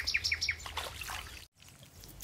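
A small bird singing a quick run of short, downward-sliding chirps, about six a second, that ends within the first second.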